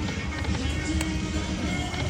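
Electronic music and game sounds from an Aristocrat Buffalo Gold video slot machine as its reels spin, over the steady din of a casino floor, with a single short click about halfway through.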